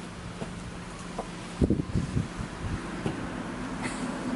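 Footsteps on a grass lawn: a few dull thuds about one and a half seconds in, with one more shortly after, over a faint steady hum.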